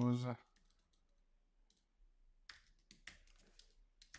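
Computer keyboard keys being typed: a handful of sharp key clicks, most of them in the second half, as an object name is typed in.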